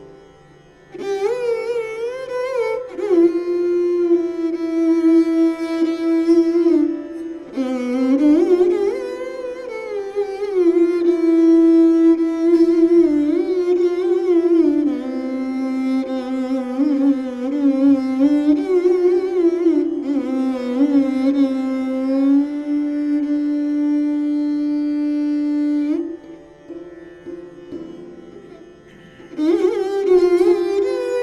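Taus (mayuri veena), a bowed Indian string instrument, playing slow unaccompanied phrases in raag Bageshri: long held notes joined by sliding glides, with a brief gap about a second in and a quieter stretch of a few seconds near the end.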